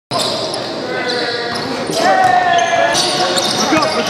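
Basketball bouncing on a hardwood gym floor during a pickup game, with players moving on the court, echoing in a large gym.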